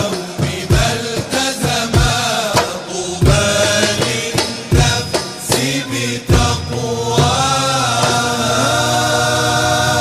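Arabic Islamic nasheed sung by a male chorus over a steady hand-percussion beat. About six seconds in the drums stop, and the voices hold one long closing chord.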